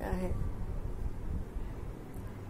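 A woman's voice trails off at the very start, leaving a steady low rumble of background noise with nothing else standing out.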